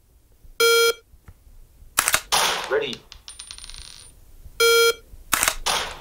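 A training app's drill sequence: a short electronic beep, a sharp crack about a second later, a recorded voice saying "ready", then a rapid metallic tinkle like brass casings hitting the floor. The beep and then two cracks come again near the end.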